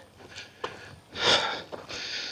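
A man sniffing once, sharply, through the nose a little over a second in, with a few faint clicks before it.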